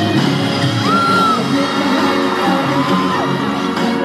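Live K-pop concert music from a large outdoor sound system, heard from within the audience, with a few short high calls rising and falling over it, about a second in and again near three seconds.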